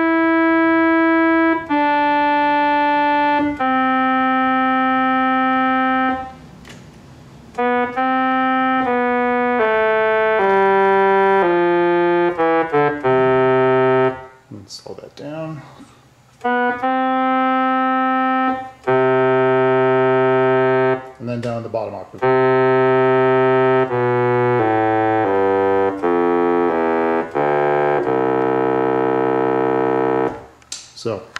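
Hammond Solovox, a 1940s monophonic vacuum-tube keyboard instrument, sounding single held notes one at a time, each a second or two long, stepping through its range from treble down into the bass. Its tone is rich in overtones. The notes stop twice for a second or two, with a few clicks in the gaps.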